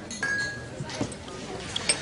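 Wine glasses clinking together in a toast, with a short bright ring about a quarter of a second in, followed by a few lighter clinks of glass and tableware.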